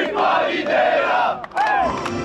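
Football players and supporters chanting and shouting together in unison in a post-match victory chant. There is a short break about one and a half seconds in before the next shout.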